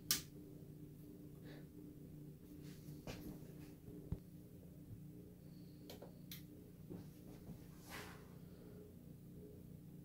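Faint steady low hum with a handful of short clicks and knocks scattered at irregular times, typical of a hand handling parts on a bench.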